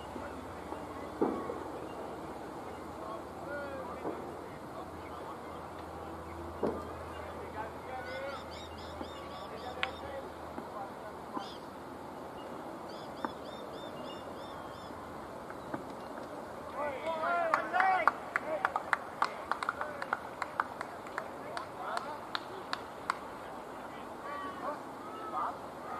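Open-air ambience at a cricket ground with scattered faint calls. In the second half come a burst of players' shouts, then a rapid run of sharp claps that dies away.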